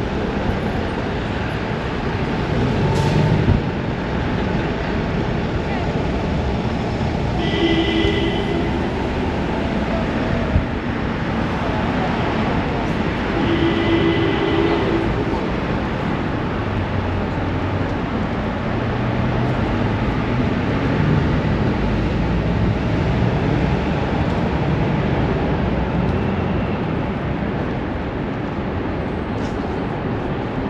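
Busy city street ambience: a steady rumble of traffic with voices of passers-by. Two brief pitched tones sound about six seconds apart.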